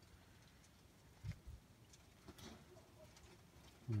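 Mostly quiet outdoor background with a couple of faint, brief calls from domestic pigeons and a soft low thump a little over a second in.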